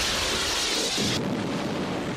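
Wire-guided anti-tank missile fired from a helicopter: a loud rushing roar of the rocket motor, with a strong hiss for about the first second before it eases to a lower rumble.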